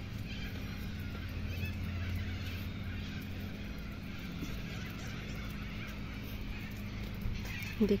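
Steady low hum of outdoor background noise with faint, scattered high chirps; a voice starts right at the end.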